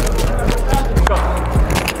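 Background music with a steady beat and a heavy, constant bass, with a voice over it.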